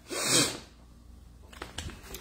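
A woman sneezes once, a short loud burst in the first half-second. Faint taps and rustling of a spiral notebook being handled follow near the end.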